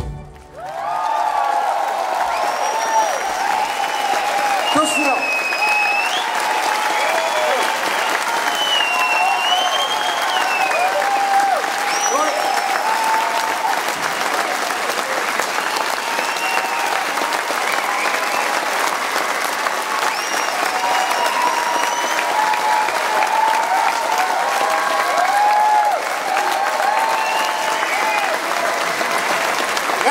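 Concert audience applauding and cheering, with high gliding whistles, as the band's song ends: the music stops right at the start and sustained applause swells up within the first second and holds steady.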